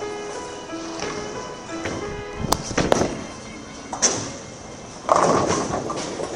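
Background music with steady notes, broken by a few sharp knocks, then a loud crash of bowling pins being scattered by a ball about five seconds in.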